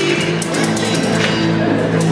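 A live acoustic band playing a song, with guitars, violin and hand drums. Sustained low notes run under a quick percussion pattern.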